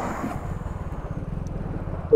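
Road traffic: a car passing close by, its road noise fading over the first half second, over a steady low engine rumble.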